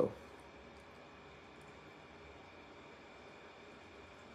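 Quiet room tone: a faint, steady hiss with a faint high hum and no distinct events.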